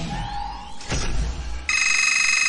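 A loud, buzzing electronic alarm tone starts near the end, after a low background of game noise with a sharp click about a second in.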